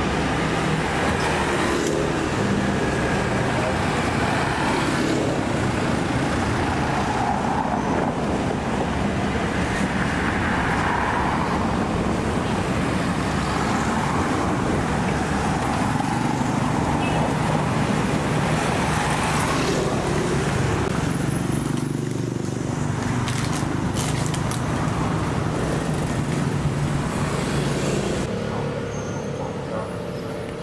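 Street ambience of steady road traffic with people's voices mixed in; it drops a little in level near the end.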